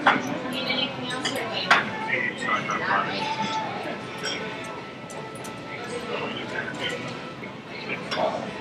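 Background music and voices, broken by a few sharp clicks and knocks from handling a laptop's cables and an external hard drive: one at the start and one near two seconds in.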